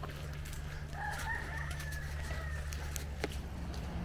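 A faint, drawn-out bird call lasting about a second and a half, over a steady low hum.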